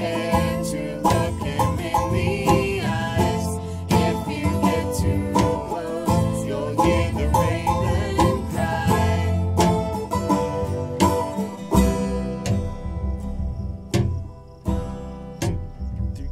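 Acoustic string band playing a bluegrass-style tune: strummed acoustic guitar, picked banjo and plucked upright bass over a steady beat.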